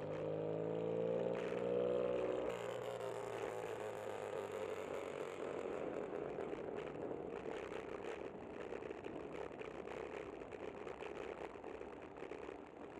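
A car engine revving up as it accelerates, its pitch rising for the first two and a half seconds and then breaking off suddenly. After that comes steady road and wind noise from riding a bicycle on city streets.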